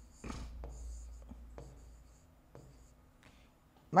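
Handwriting sounds: a pen tip scratching over a writing surface for about two seconds, then a few light taps.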